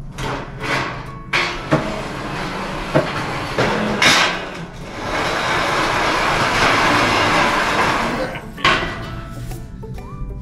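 A metal pegboard gondola store shelf being pushed across a tile floor: a continuous rumbling scrape, loudest in the second half, with several sharp clanks and knocks as it shifts.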